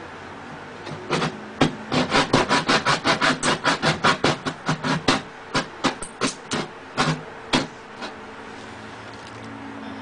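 Hand saw cutting through wood in quick back-and-forth strokes, about four a second. The strokes start about a second in and stop a couple of seconds before the end.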